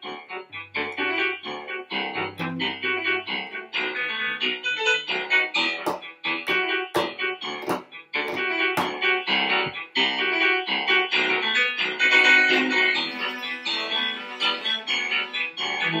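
Cello and piano playing a tango, with quick, rhythmic piano notes to the fore.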